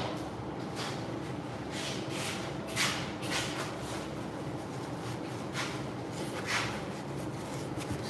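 Scattered short rustles and light knocks from things being handled, such as a plastic bag and the phone, over a faint steady background hum.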